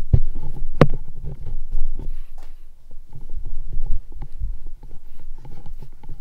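Handling noise from a gaming headset with a ModMic 4.0 boom mic being gripped and shifted on the head, heard through the headset's own mic. It comes as irregular low thumps and rumbles with rubbing, and two sharp clicks in the first second.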